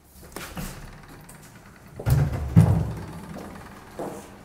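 Two heavy, deep thuds about half a second apart halfway through, each ringing on briefly, with a faint knock shortly before.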